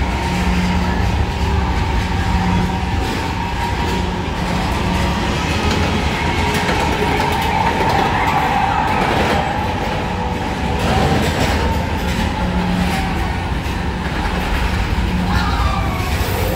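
Tomorrowland Transit Authority PeopleMover car running along its track, driven by linear induction motors: a steady rumble with a low hum that swells and fades as the car passes over the motors.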